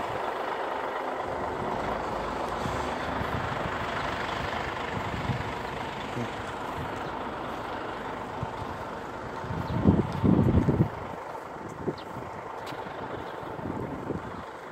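Steady vehicle engine noise with a faint continuous hum, rising into a brief louder burst about ten seconds in.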